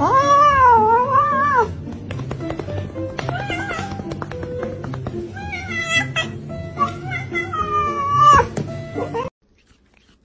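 Domestic cat yowling in long, wavering calls. One lasts nearly two seconds at the start, shorter ones come a few seconds in, and another long one falls around seven to eight seconds. All sound cuts off suddenly about nine seconds in.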